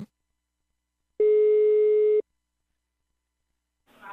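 Telephone ringback tone heard down the line while the called phone rings: one steady beep of about a second, the Brazilian ring cadence of a long tone followed by a long gap.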